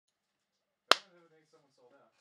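A single sharp click about a second in, followed by a man's quiet voice for about a second.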